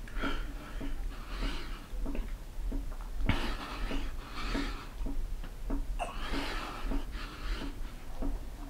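Heavy breathing of a man doing push-ups, with a forceful breath about once a second. Light taps run between the breaths, and there is one sharper knock about three seconds in.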